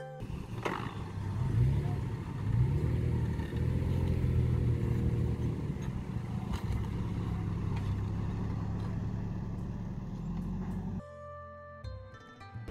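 Vehicle engines running under load as a Toyota FJ Cruiser tows a stuck Toyota pickup free, revving with a few rising sweeps in pitch in the first seconds, then running steadily. The engine sound cuts off shortly before the end, where music comes in.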